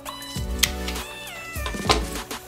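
Background instrumental music with held and sliding notes, broken by two sharp clicks, about half a second in and near the end.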